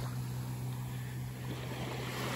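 Small waves washing gently on a calm sandy beach, with a steady low hum running under the sound of the water.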